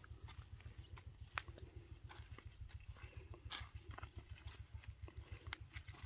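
Faint footsteps on a dry dirt path: irregular soft crunches and scuffs a few times a second over a low rumble.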